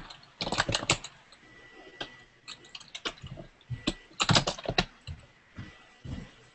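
Typing on a computer keyboard: three short runs of quick key clicks with pauses between them.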